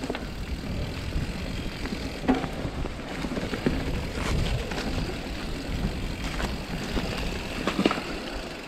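Mountain bike rolling over a rough dirt trail: a steady rumble of tyres and wind on the microphone, with scattered knocks and rattles from the bike over bumps.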